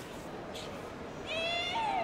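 A high-pitched shout of under a second near the end, its pitch rising and then falling away.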